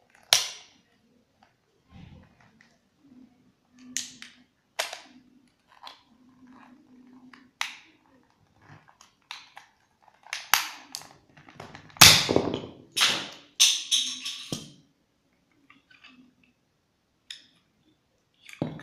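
Cheap plastic Rubik's cube being twisted and pried apart: a series of sharp plastic clicks and snaps as its pieces are worked loose, coming thickest and loudest about two thirds of the way through.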